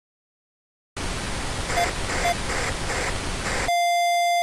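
Logo intro sound effect: a hiss like TV static starting about a second in, with faint beeps in it, then switching abruptly near the end to a steady beep tone.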